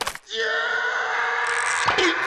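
A skateboard strikes the floor once with a sharp clack, followed by a steady held tone with several overtones.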